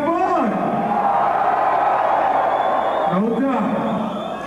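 Concert crowd cheering and yelling for about two and a half seconds, until a man's voice on the mic cuts back in near the end.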